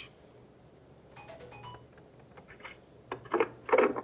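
Voicemail playing back through an Avaya desk phone's speaker, a message that is only a hang-up: a few short beep-like tones about a second in, then two brief voice-like sounds near the end, over a low steady hum.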